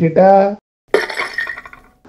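A short spoken exclamation, then about a second in a noisy crash sound effect that fades away over about a second.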